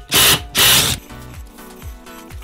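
Cordless impact driver hammering a flywheel puller bolt in two short bursts in the first second, pulling the heated flywheel rotor off the crankshaft of a 2021 Kawasaki KX250 engine. Background music follows.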